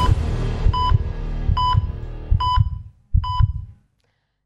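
The tail of a TV theme tune: five short electronic beeps, about one every 0.85 s, like a heart monitor's, each over a low heartbeat-like thump. It dies away near the end.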